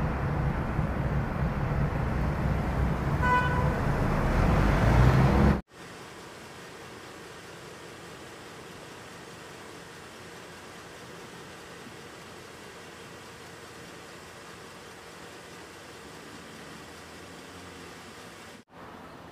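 Street traffic: a vehicle's engine rumble growing louder, with a short horn toot about three seconds in. It cuts off abruptly after about five and a half seconds, and a steady faint hiss of background noise follows.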